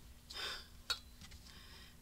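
Paper strips sliding and rustling on a paper trimmer's base as they are lined up, with one sharp click about a second in.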